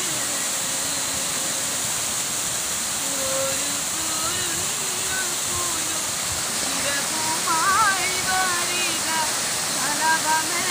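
A waterfall's steady rush, with a woman singing unaccompanied over it: long held notes, faint at first, then louder about three-quarters of the way in with a phrase whose pitch wavers up and down.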